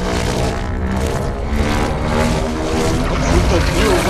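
Movie trailer soundtrack: loud held music notes over a dense low rumble of effects, with a few gliding, cry-like sounds near the end.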